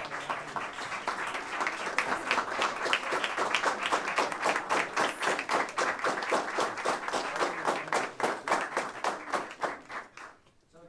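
Audience applauding, with individual claps standing out sharply. It dies away near the end.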